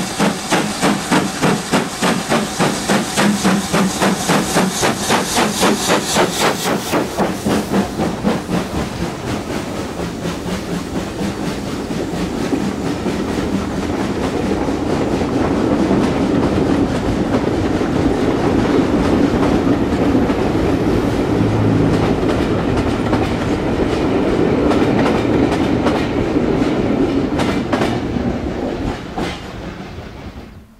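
Southern Railway U class 2-6-0 steam locomotive 31806 working hard with a heavy six-coach train: quick, even exhaust beats for the first several seconds as the engine passes. The beats then give way to the steady rumble and wheel clatter of the coaches rolling by, which fades away at the end.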